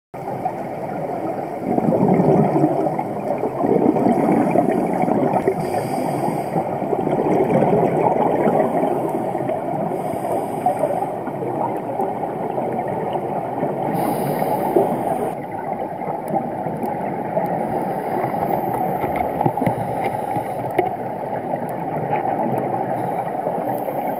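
Underwater sound picked up through a diving camera's housing: a steady rush of water with scuba regulator exhaust bubbles gurgling, swelling in louder surges a couple of times early on, and a few small clicks.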